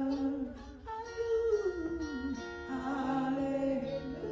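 A woman singing a slow worship song into a handheld microphone, holding long notes. There is a short break for breath a little under a second in, and a falling run of notes in the middle.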